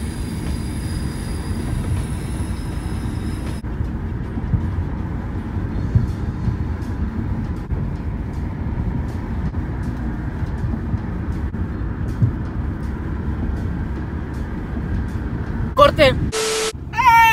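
Steady low road rumble inside a moving car's cabin. A thin, high steady whine sounds over it for the first three or four seconds, then stops.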